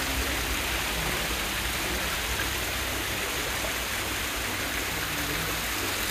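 Water pouring from spouts in a wall into a tiled fountain pool, a steady rushing splash.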